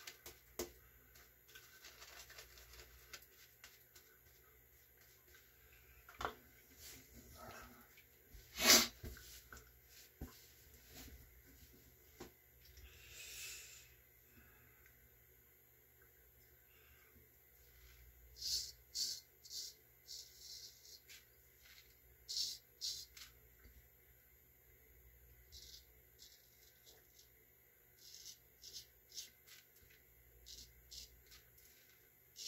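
Short, quiet scraping strokes of a Chinese straight razor cutting through lathered stubble, coming in quick groups in the second half. Earlier there is faint handling noise and one sharp click about a third of the way in.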